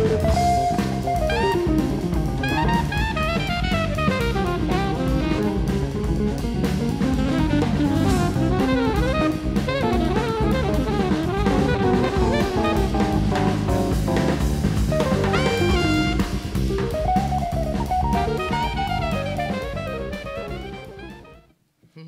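A recorded modern jazz track with drum kit, bass and a winding melody line, played back over loudspeakers. It is faded down about 20 seconds in and cut off just before the end.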